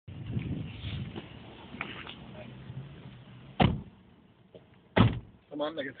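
Two car doors slam shut, about a second and a half apart, over an engine running at a low, steady idle.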